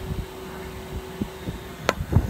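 Low steady hum with a faint thin tone that stops about halfway through, then one sharp click near the end as the phone camera is handled and swung away from the engine bay.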